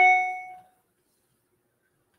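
A single bright ding from a chime, struck once right at the start and ringing out over about two-thirds of a second.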